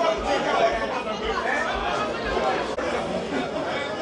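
Several voices talking over one another: chatter from spectators around the camera.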